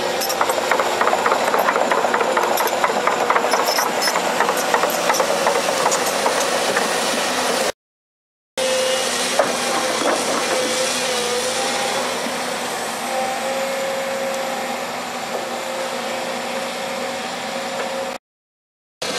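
Tracked hydraulic excavator's diesel engine running steadily while the machine handles steel-and-wood road plates, with rapid rattling and clanking over the first few seconds. The sound drops out completely for under a second about eight seconds in, then the engine runs on evenly.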